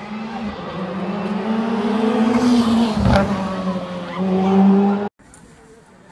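Rally car's engine at high revs as it comes down the street, the pitch rising, dipping and climbing again, with a sharp crack about three seconds in. The engine sound cuts off suddenly just after five seconds.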